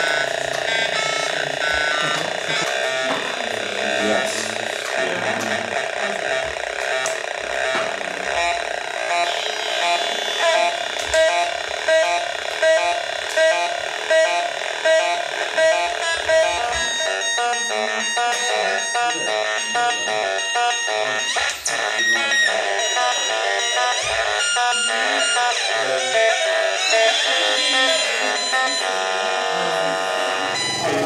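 Hand-built Atari Punk Console, a modified version with a 5-step sequencer, buzzing out harsh electronic square-wave tones that step between pitches in a short repeating loop, its sound shifting as the knobs are turned.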